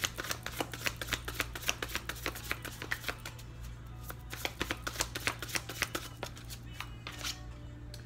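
A deck of tarot cards being shuffled by hand: a fast run of crisp card clicks and snaps for the first few seconds, then sparser clicks as the shuffling slows.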